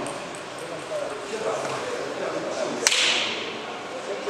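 A single sharp smack about three quarters of the way through, trailing off in a short hiss, over low murmuring voices in a large hall.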